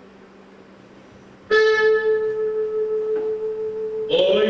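A single sustained keyboard note starts suddenly about a second and a half in and holds steady, as the opening of a piece of music; before it there is only a faint low hum.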